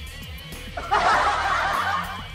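Laughter sound effect over background music: the first second is quieter, then a burst of many overlapping snickering voices starts a little under a second in.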